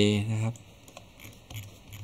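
A man's voice for the first half-second, then a few faint, scattered computer keyboard clicks.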